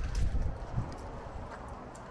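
Footsteps on a paved path: a few low thuds in the first second, then they fade into a faint steady outdoor background.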